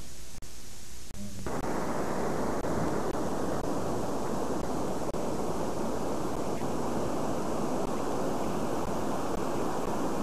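Steady wind rushing over a camcorder microphone, setting in abruptly about a second and a half in. Before it there are a few sharp clicks and brief dropouts from a tape edit.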